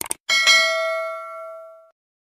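Subscribe-button sound effect: a couple of quick mouse clicks, then a bell ding that rings and fades out over about a second and a half.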